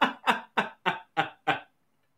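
A man laughing hard in a run of about six short, breathy bursts, roughly three a second, dying away about one and a half seconds in.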